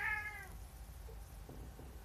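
Domestic cat meowing once, a short call that falls slightly in pitch.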